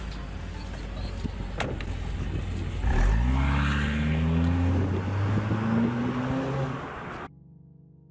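A car's engine idling, with a car door shutting about one and a half seconds in, then the Honda coupe pulling away: its engine note climbs in pitch several times as it accelerates through the gears. The sound cuts off abruptly about seven seconds in.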